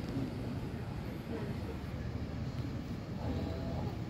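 Steady low rumble of indoor room noise, with faint voices in the background late on.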